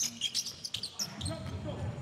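A basketball bouncing on a hardwood court amid sneakers squeaking, a string of short sharp thuds and squeaks, as players scramble for a steal and break upcourt on the dribble.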